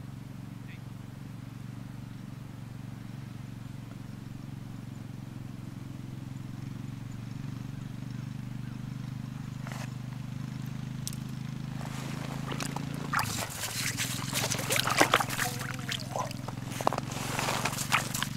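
A steady low drone of several even tones runs under the scene. In the last several seconds come sharp clicks, knocks and scraping as a bluegill is hauled up through the ice hole on a short ice rod and landed on the ice.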